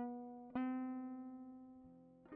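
Clean guitar playing slow single notes in a song intro: one note at the start and another about half a second in, each left to ring and fade.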